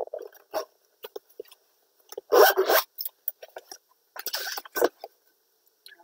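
Hands rummaging and handling objects: a few light clicks and taps, with two short rustling scrapes about two and a half seconds in and about four and a half seconds in.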